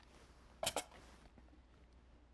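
Two quick clacks close together, a little over half a second in: a plastic hot glue gun being set down on the tabletop, with faint handling rustle around it.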